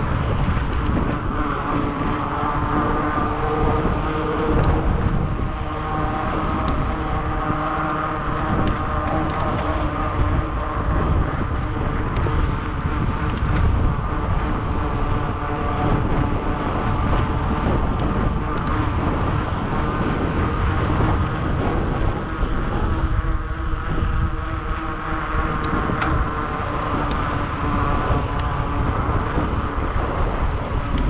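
Wind rushing over a bicycle-mounted action camera's microphone while riding, with a steady hum underneath.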